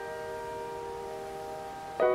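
Piano chord held with the sustain and slowly dying away, several notes sounding together with no new strike.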